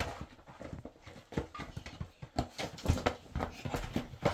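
A steel shovel scraping into loose dirt and tipping soil and clods into a metal wheelbarrow, with irregular knocks and scrapes.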